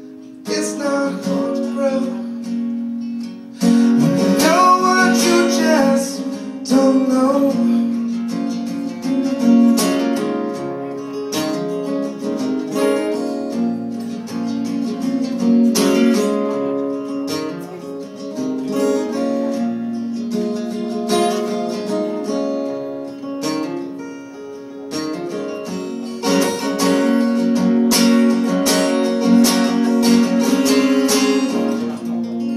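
Steel-string acoustic guitar strummed and picked in a steady rhythm, with a voice singing briefly over it about four seconds in.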